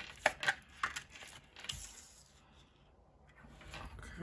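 A deck of tarot cards handled and shuffled in the hands: a run of sharp card clicks and snaps over the first two seconds, then quieter.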